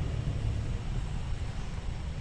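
Steady low rumble of outdoor background noise, without any distinct event.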